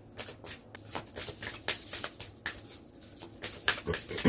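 A deck of tarot cards being shuffled by hand, in a quick, uneven run of card snaps.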